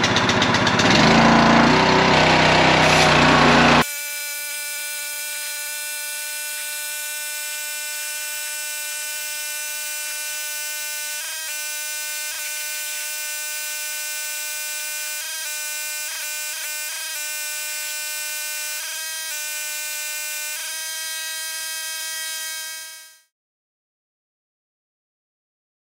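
Small gas engine of a pressure washer running loudly. About four seconds in, the sound cuts abruptly to a steady high-pitched buzz that carries on, with slight shifts in pitch, until it fades out near the end.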